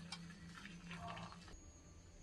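Very quiet room tone with a faint low hum and a few soft, scattered clicks.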